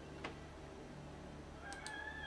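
Faint computer-mouse clicks, one about a quarter second in and a few close together near the end, over a steady low electrical hum.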